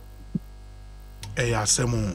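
Steady low electrical mains hum with a single short click about a third of a second in; a voice starts speaking about halfway through.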